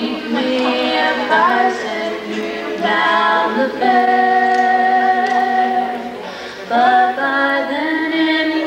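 A young female vocalist singing through a microphone, with acoustic guitar accompaniment, holding one long note about four seconds in.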